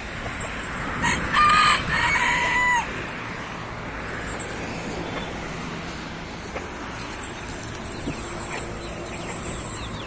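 A rooster crows once, about a second in: one long call lasting nearly two seconds, held level and dropping a little in pitch toward its end.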